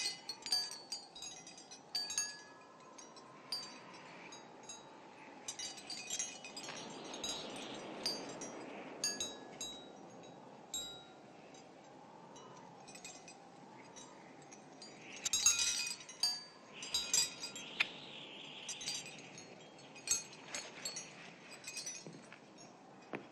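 Hanging glass prisms of a lamp tinkling and clinking against each other in scattered clusters, busiest at the start and again about fifteen seconds in.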